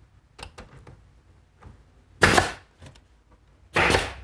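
A pneumatic brad nailer firing twice into wood, each shot a short sharp hissing pop, about a second and a half apart, with a few light clicks before them.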